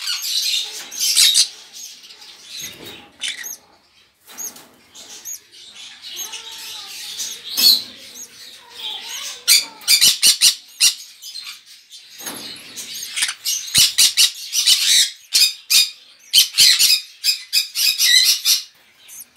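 Caged parrots chirping and squawking: many short high calls in quick runs, with louder bursts of calls about ten seconds in and again near the end.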